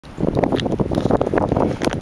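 Wind buffeting the camera microphone: a loud, gusting rumble with scattered crackles.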